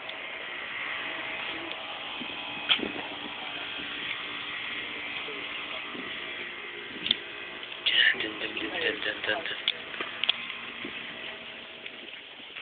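Indistinct voices of people talking, with a few sharp clicks or knocks.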